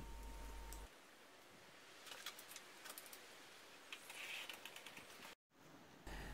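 Near silence, with a few faint light clicks from a bicycle rear wheel being handled back into the frame, about two seconds in and again about four seconds in.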